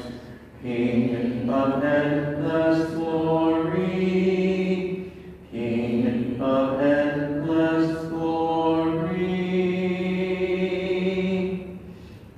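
Sung Lenten Gospel acclamation: a voice singing slow phrases of long held notes, with short breaks about half a second in and about five and a half seconds in.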